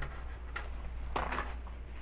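Paper towel rustling and crinkling as it is pulled out and shaken open: a short crackle about half a second in and a louder brief crinkle just after a second in, over a steady low hum.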